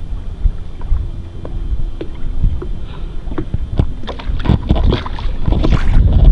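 Wind buffeting the microphone over choppy water that slaps against a small boat's hull, with scattered short knocks and splashes that grow busier in the last couple of seconds.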